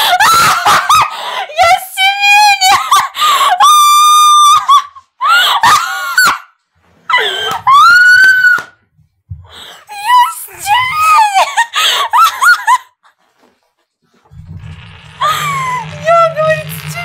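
A woman's hysterical laughter in loud, high-pitched shrieking bursts, some held for about a second, breaking off for about a second near the end.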